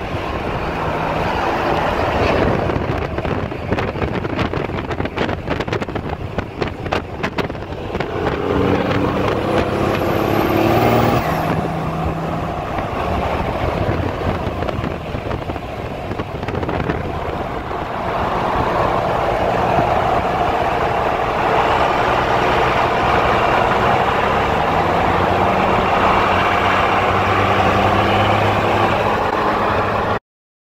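Pickup truck engines running on the road with heavy road and wind noise, heard from inside a moving vehicle. A brief high whistle rises and falls about a third of the way in, and the engine pitch climbs in steps through the second half as the vehicles accelerate.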